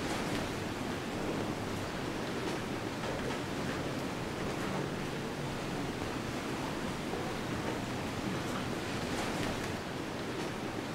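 Steady hissing wash of background noise with a few faint scattered ticks.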